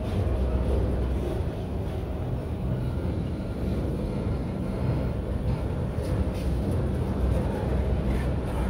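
Autorack freight cars rolling past close by: the steady low rumble of steel wheels on the rails, with a few faint knocks.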